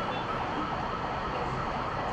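Several emergency sirens wailing at once, their rising and falling tones overlapping steadily.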